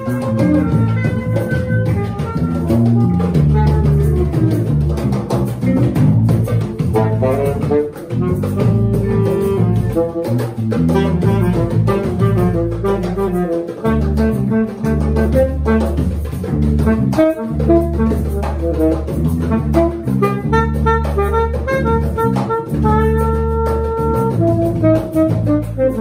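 Live jazz jam: a saxophone plays a melodic solo line over a deep walking bass and drums, with an electric guitar in the band.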